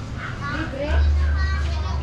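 Children's high-pitched voices calling and shouting as they play, over a low steady rumble that gets louder about a second in.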